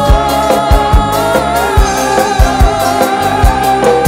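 Live dangdut band music: a bamboo suling flute carries a held, bending melody over a steady pattern of drum beats.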